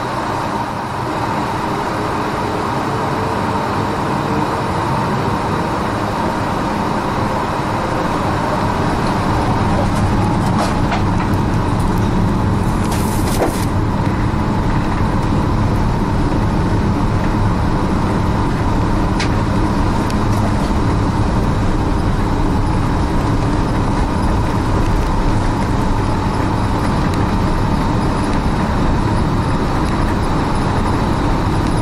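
Airbus A380 engines at takeoff power, heard inside the cabin during the takeoff roll: a steady engine drone and rumble that grows louder over the first several seconds, then holds level. A few brief rattles come about midway.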